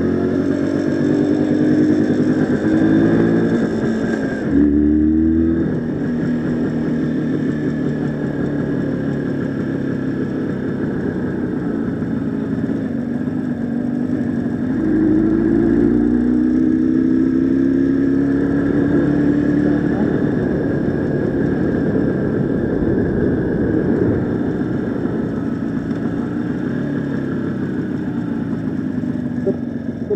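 Jawa motorcycle engine running under way, heard from on the bike. The revs climb and drop back twice, near the start and again about halfway through.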